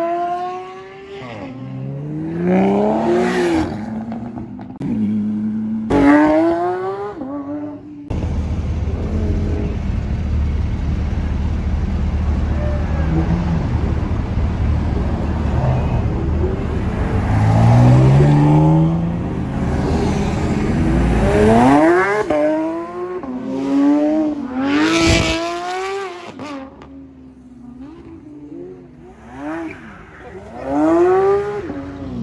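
Performance cars accelerating away hard, the engine pitch rising in sweeps and dropping back at each upshift. About a third of the way in the sound changes suddenly to a loud, low, steady rumble with a lower engine revving up under it, then more hard acceleration with upshifts follows.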